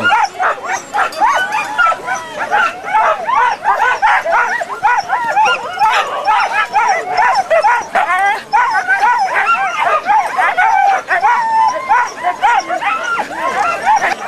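A team of harnessed Siberian huskies barking and yipping all at once in a dense, unbroken chorus, the excited clamour of sled dogs eager to be let go at the start line.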